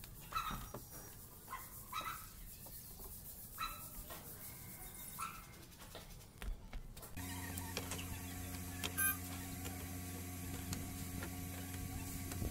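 Short, faint, high squeaks repeating about every one and a half seconds. About seven seconds in they give way to a steady low machine hum.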